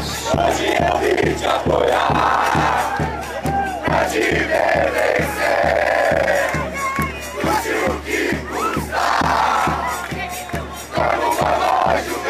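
Football supporters singing a chant together, loud and close, over a steady drumbeat of about three beats a second.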